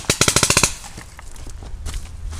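Paintball marker firing a rapid burst of about ten shots in half a second, then one more shot near the end.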